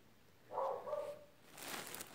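A short pitched vocal sound about half a second in, then a thin plastic carrier bag rustling and crinkling as a hand rummages in it near the end.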